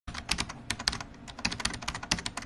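Rapid, irregular clicking from an edited intro sound effect, a quick run of sharp clicks like fast typing on a keyboard.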